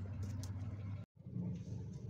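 A vehicle engine idling steadily, with a few faint clicks in the first half second; the sound drops out completely for an instant about a second in.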